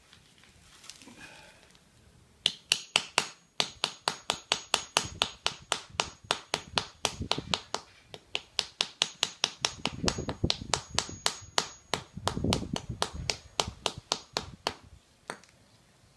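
Steel claw hammer tapping a plaster of Paris mould on concrete, chipping it apart. Rapid sharp strikes, about four a second, begin a couple of seconds in and stop just before the end, with a few heavier thuds among them.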